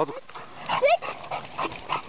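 An American Staffordshire terrier gives one short vocal call that rises in pitch about a second in, with light scuffling and clicks as it plays with a stick.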